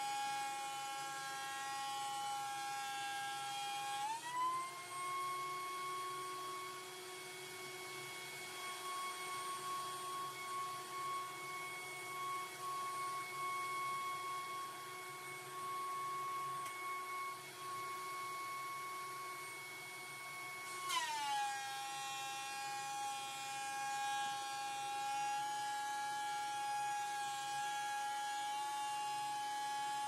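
DeWalt benchtop thickness planer running, a steady electric motor whine. The pitch steps up with a knock about four seconds in and drops back with another knock about 21 seconds in, the motor running freer between boards and slowing under the cut as a board on the flattening sled feeds through.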